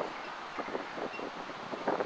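Quiet outdoor background noise, a steady faint rush with no distinct event standing out.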